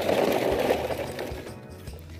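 A short grainy rattle of hard plastic toys knocking and scraping together as a plastic water gun is lifted off a pile of plastic toy trucks. It is loudest in the first second and fades away, over background music.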